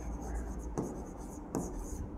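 A stylus writing on the glass screen of an interactive smart board: soft scratching with a couple of light taps as the letters are drawn.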